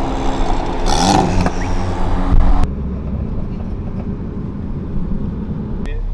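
A lowered car's engine running as it rolls slowly past, with a brief louder burst about a second in. The sound cuts off abruptly after about two and a half seconds into a quieter, steady low engine rumble.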